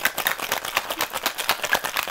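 Ice rattling inside a stainless-steel cocktail shaker that is being shaken hard, in fast even strokes, to mix and chill gin, lime juice and simple syrup.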